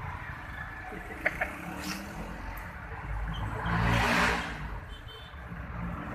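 Cabin noise inside a moving van: a steady engine and road rumble, with a few small clicks about a second in and a louder rush of noise that swells and fades around the four-second mark.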